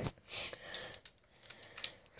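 A few faint light clicks and a short soft hiss, with quiet gaps between them.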